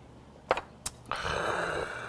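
Two sharp clinks of tableware, the first with a short ring, then a loud, breathy exhalation from a man lasting about a second.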